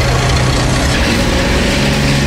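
Tracked self-propelled howitzer driving on a road: a steady, heavy engine drone under a loud rush of running and track noise.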